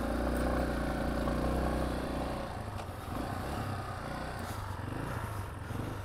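Yamaha XT250's air-cooled single-cylinder engine pulling the bike up a soft sand hill. It is loudest for the first two seconds as the bike passes, then grows fainter as the bike climbs away.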